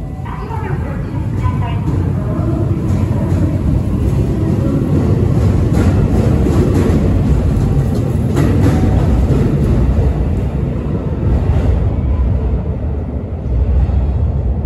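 JR Hokkaido 721 series electric train departing and running past, a loud steady rumble of wheels on rail, with a few sharp clacks over the rail joints around the middle.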